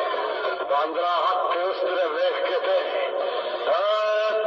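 Song from a short video clip: a singing voice holding wavering, drawn-out notes over music. The sound is thin, with little treble, like audio heard through a small speaker.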